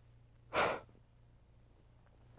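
A person's single sharp, breathy exhale, like a heavy sigh, about half a second in and lasting about a quarter second, over a steady low hum.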